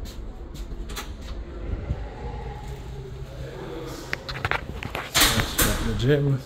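A key-card-locked glass entrance door being unlatched and pushed open, with a few sharp clicks and knocks of the latch and handle, and a louder, short noisy rush about five seconds in as the door moves through.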